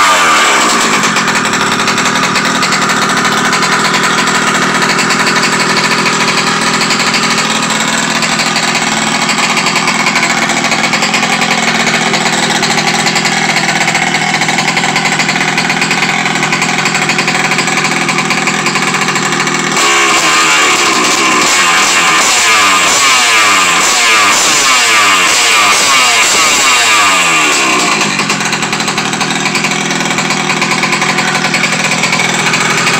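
Taylor 46GT two-stroke gas engine with a tuned pipe on a 1/5-scale RC car, running steadily at idle during break-in. From about two-thirds of the way in, the throttle is blipped again and again, so the pitch rises and falls repeatedly, then the engine settles back to idle near the end.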